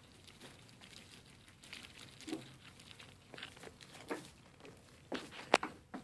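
Goats eating feed pellets from a hand: faint, scattered crunching and crinkling, with a sharper click near the end.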